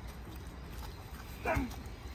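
A single short vocal call, falling in pitch, about one and a half seconds in, over a quiet background.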